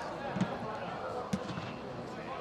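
Two thuds of a football being kicked, about a second apart, inside a large air-supported dome hall, over distant players' calls.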